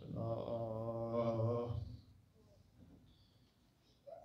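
A man's voice chanting one long phrase at a held, steady pitch for about two seconds into a microphone, then quiet.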